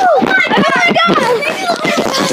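Several high-pitched children's voices shouting and yelling excitedly over one another.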